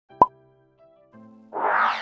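Intro sound effects over soft music: a sharp pop with a brief tone about a quarter second in, then quiet held notes, and a whoosh that swells up in the last half second.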